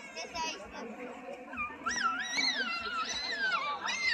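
A young child's high-pitched voice: one long call that rises and falls in pitch, from about two seconds in to near the end, over background chatter of people.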